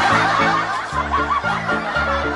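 Laughter over background music with a steady, choppy bass beat.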